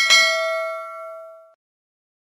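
Notification-bell 'ding' sound effect: one chime that rings and fades out over about a second and a half.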